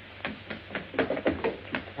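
Several light, irregular knocks on a wooden door.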